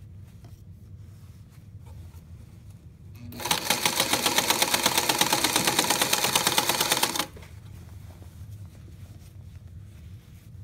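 Sewing machine stitching at speed for about four seconds: a fast, even clatter of the needle that starts about three seconds in and cuts off suddenly. It is sewing down a stretched elastic waistband.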